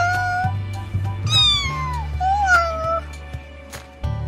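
Kitten meowing three times: a short call, then a longer one that falls in pitch, then a shorter one that rises and falls.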